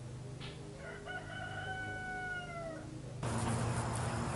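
A rooster crows once, a single drawn-out call of about two seconds whose pitch sags slightly at the end. A little after three seconds a louder steady hiss of outdoor noise starts suddenly.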